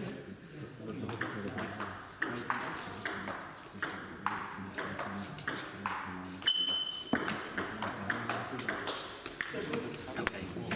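Table tennis rally: the ball clicking off the paddles and the table in quick back-and-forth strokes, several a second. A short high-pitched tone sounds about six and a half seconds in.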